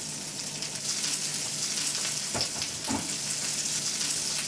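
Chopped cabbage and other vegetables sizzling steadily as they fry and are stirred in already-hot oil in a frying pan, with two short knocks partway through.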